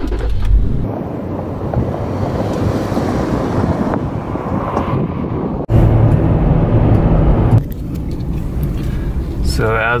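A car engine started by a push button, then engine and road noise inside the moving car's cabin. About six seconds in the noise jumps abruptly to a louder, lower hum, and it drops back a couple of seconds later.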